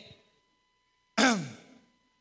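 A man's short sigh about a second in: one breathy voiced sound falling steeply in pitch and fading over about half a second.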